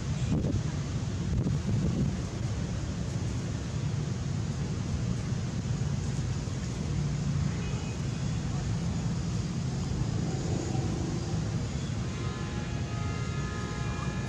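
A steady low rumble of outdoor background noise, with faint thin tones coming in near the end.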